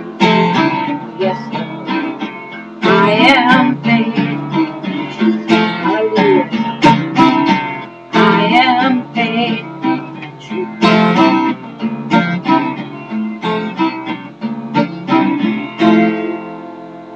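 Acoustic guitar strummed in a steady rhythm, with a woman's voice singing held, wavering notes about three seconds in and again near eight seconds.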